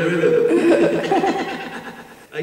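A man laughing: one long, wavering laugh that fades near the end.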